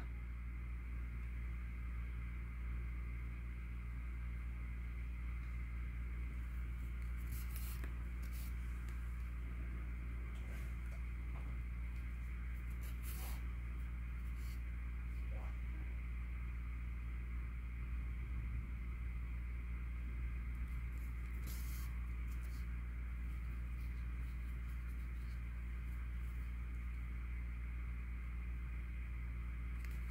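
Steady low hum with a few faint, short clicks and rustles as a yarn needle is worked through crocheted stitches by hand.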